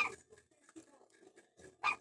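A dog barking twice, two short barks just under two seconds apart.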